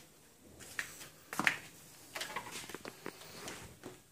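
Faint footsteps and small knocks on a hard floor, with a sharper click about one and a half seconds in.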